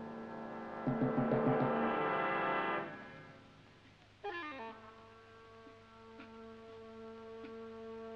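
Orchestral film score with held brass chords. About a second in, a loud chord comes with a quick run of drum strokes and fades out near three seconds. A new sustained chord enters sharply just after four seconds and holds.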